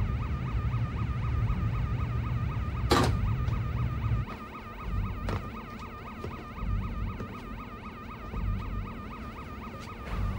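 A shipboard electronic alarm warbling rapidly and without a break, the submarine's emergency alarm. A low rumble underneath drops away about four seconds in, and there is a single sharp knock about three seconds in.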